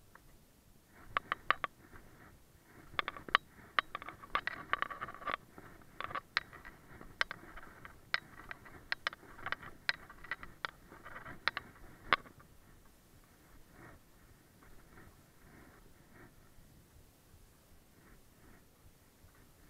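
Skis scraping and skidding over a hard, icy piste, their edges dull, with many sharp clicks and knocks through the first two-thirds; after that only a faint hiss of gliding.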